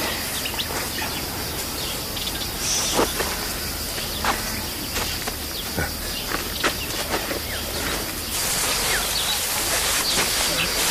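Outdoor ambience: scattered short chirps and clicks over a steady hiss.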